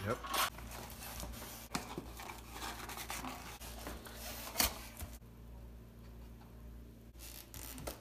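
Paper crinkling and scraping as baking soda is scooped from its opened container with a tablespoon, with one sharp clack a little past halfway.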